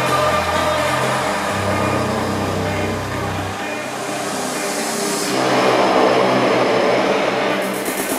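Electronic dance music played by a DJ over a club sound system, in a breakdown: the bass line stops about halfway through, then a swelling noise build rises before the beat returns.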